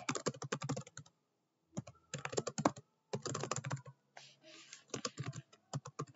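Computer keyboard typing: runs of quick keystrokes separated by short pauses.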